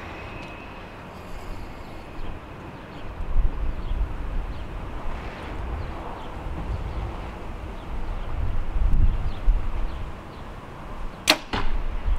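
A 2020 PSE Evo NXT 33 compound bow held at full draw, then shot near the end with one sharp snap as a back-tension hinge release lets the string go. A low rumble runs through the middle while the bow is held.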